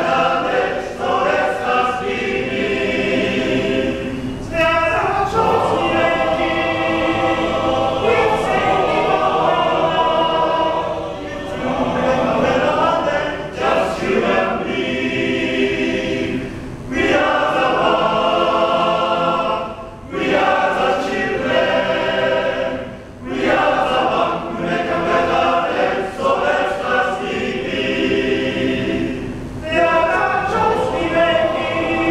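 Men's choir singing a pop-song arrangement in harmony, in sung phrases with short breaks between them.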